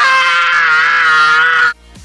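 A boy's long, loud scream held on one pitch with a slight waver, cutting off suddenly shortly before the end.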